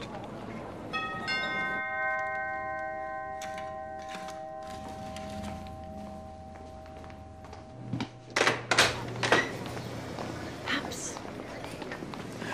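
Doorbell chime struck twice in quick succession about a second in, its tones ringing out and fading over several seconds. A few sharp knocks or thumps follow near the end.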